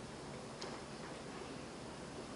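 Room tone picked up by a talk microphone: a faint, steady hiss with one faint click a little over half a second in.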